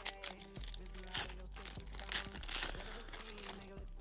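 A Pokémon TCG Fusion Strike booster pack's foil wrapper crinkling and tearing as it is opened by hand: a run of small crackles.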